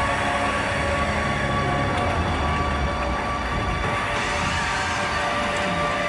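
Industrial electronic music: a dense, noisy drone with a few steady held tones over a low rumble that swells and fades, with no vocals.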